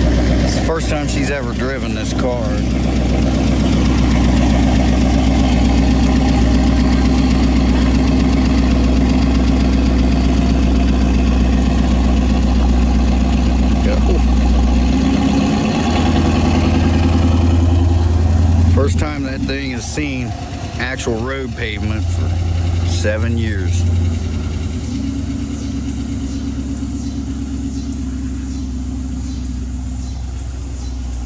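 Chevrolet Corvette C4's V8 engine idling steadily, then changing note about halfway through as the car pulls out and drives off, growing quieter over the last ten seconds. Voices are heard briefly near the start and again around two-thirds of the way in.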